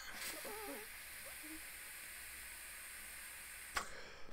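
Faint, steady hiss of a long draw on a Uwell Crown pod vape, air pulled through the pod for nearly four seconds, stopping with a small click just before the end.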